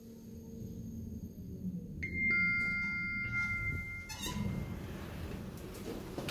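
Electronic chime of a KONE lift: steady tones at a few pitches ring together about two seconds in, hold for about two seconds and stop, followed by a short rattle.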